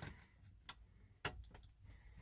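A few faint, sharp clicks, the clearest two about half a second apart near the middle: an SD card being pushed into the spring-latched bottom card slot of a Garmin G3000 display.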